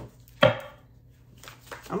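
Tarot deck being shuffled by hand, with one loud, sharp slap of the cards about half a second in and a few faint clicks of card handling around it.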